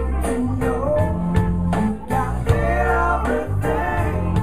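Live band playing a country-rock song: electric guitars and bass over a drum kit's steady beat, with a male voice singing.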